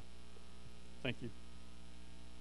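Steady electrical mains hum with a ladder of overtones running under the recording, with one brief spoken word about a second in.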